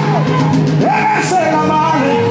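Live gospel worship music: a singer's voice swoops up and down in arching, sliding notes over a steady band accompaniment with held chords.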